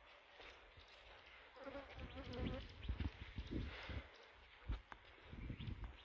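A flying insect buzzing briefly close by, wavering in pitch, with soft footsteps and brush rustling now and then.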